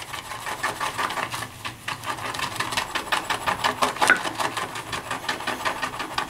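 Synthetic-knot shaving brush whisking soap and water around a stoneware shaving bowl in rapid, even strokes, several a second, as the lather begins to form.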